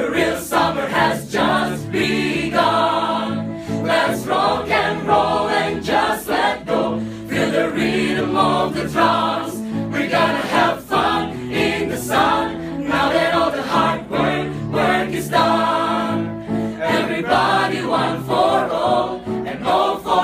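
A choir singing an upbeat pop song together over a steady, regular beat.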